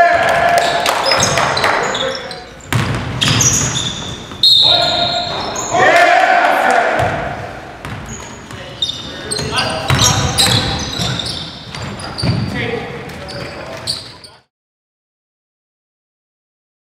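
Indoor basketball game in a gymnasium: players' unworded shouts and calls, high sneaker squeaks and the ball bouncing on the hardwood floor, until the sound cuts off suddenly about fourteen seconds in.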